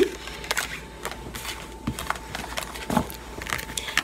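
Tarot cards being gathered up off a cloth-covered table by hand: soft sliding and rustling of card stock with a few light taps and clicks as the cards are stacked.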